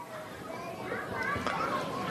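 Faint, distant high-pitched voices in the background, wavering and indistinct, during a pause in the close speech.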